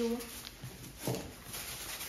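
The tail of a woman's drawn-out word, then a quiet room with two brief soft knocks.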